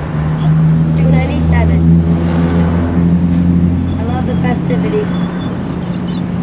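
Car idling at a drive-thru window: a steady low hum in the cabin, under faint voices.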